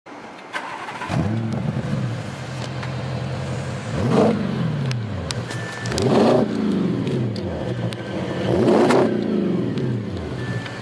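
Audi S6's twin-turbo 4.0 V8 through an aftermarket stainless-steel sport exhaust, revved four times while standing, each rise dropping back to a steady idle.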